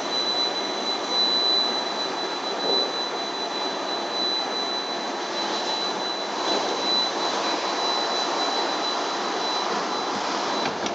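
Steady mechanical running noise with a thin, constant high whine from the Via Balbi–Corso Dogali lift as its cabin travels along the curved rails and moves away.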